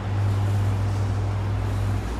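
Steady low hum and rumble inside a Leitner cable car gondola cabin as it travels along the cable just past a support tower.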